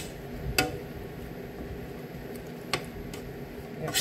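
Wire potato masher working boiled potatoes in a stainless steel pot: a few sharp knocks of metal against the pot, one about half a second in and a louder one near the three-second mark.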